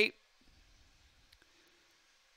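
Near silence: faint background hiss with one faint short click about halfway through, just after a man's voice cuts off at the very start.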